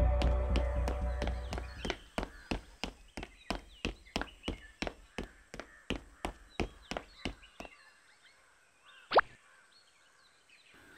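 Quick running footsteps, about three steps a second, for a cartoon character, with music fading out over the first two seconds. The steps stop near eight seconds, and a short swooping tone follows about a second later.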